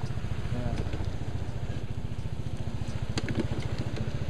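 A motorcycle engine idling steadily with an even low pulse.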